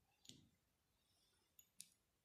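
A few faint sharp clicks, one about a quarter second in and two close together near the end: a small neodymium-magnet plumb bob touching a stone.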